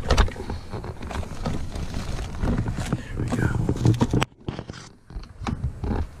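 Irregular knocking, clicking and rustling of things being handled close by. About four seconds in, the sound drops suddenly and goes muffled for about a second.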